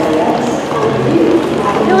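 Indistinct voices talking low, under outdoor background noise.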